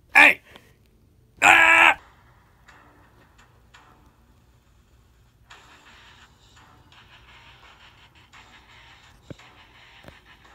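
Two loud voiced cries near the start, a short one and then a harsher yell about half a second long; from about five seconds in, quiet background music.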